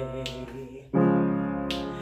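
Upright piano: the previous notes fade out, then a chord is struck about a second in and rings, dying away, sounding the pitch for the next semitone step of a chromatic vocal exercise.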